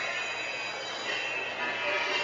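Indistinct chatter with dance music playing underneath.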